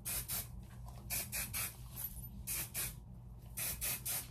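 Aerosol spray can sprayed onto lifted sections of hair in a series of short hissing bursts, several of them in quick pairs.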